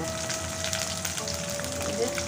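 Sliced onions, dried red chillies and whole spices frying in hot oil in an aluminium karahi, a steady sizzle with a fine crackle, as they are stirred with a wooden spatula.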